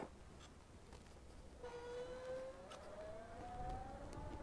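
Faint siren: a single wailing tone that comes in about a second and a half in and rises slowly in pitch.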